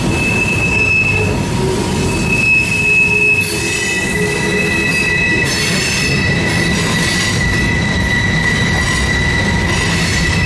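Freight train cars rolling past on a sharp curve, their wheels squealing in high steady tones over the low rumble of wheels on rail. One squeal sounds on and off in the first few seconds, and a slightly lower one takes over about three and a half seconds in and holds.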